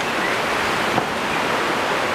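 Sea surf breaking on the shore, an even, steady rush of noise.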